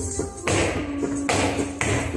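Odissi dance music with bright jingling strikes about half a second in, again past a second and near the end, mixed with the dancer's bare feet tapping and stamping on the floor.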